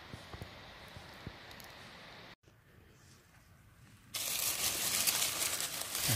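Dry beech leaf litter rustling and crackling as a hand pushes through it around a porcino, loud from about two-thirds in. Before that there are only a few faint clicks.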